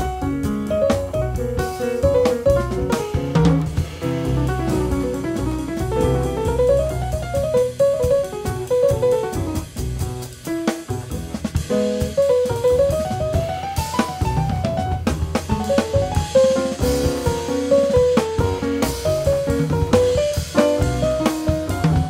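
A jazz quartet plays instrumental music: a drum kit with snare, bass drum and cymbals, a double bass, and a fast running melodic line in the middle register.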